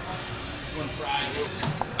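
Indistinct voices talking, with no clear words, over gym background noise. A few short sharp knocks come near the end.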